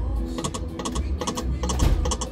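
Konami video slot machine's reel-spin sound effects: a run of quick, sharp clicks, about five or six a second, as the reels spin and stop one after another.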